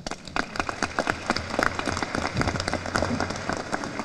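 Audience applauding: many hands clapping at once, beginning just after the speech ends and keeping up at a steady level.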